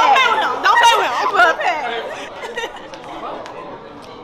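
Several people talking over one another in a crowded room, loud and close for about two seconds and then fading into quieter background chatter.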